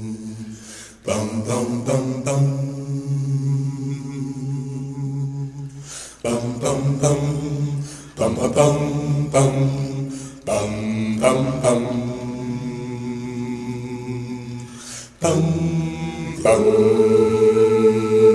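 Unaccompanied voices singing a cappella, holding long notes in phrases of a few seconds with short breaks between them.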